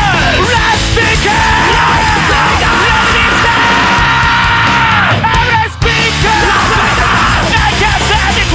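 Japanese thrashcore song played by guitar, bass and drums, with yelled vocals. A long note is held through the middle, and the band drops out for an instant about three-quarters of the way through.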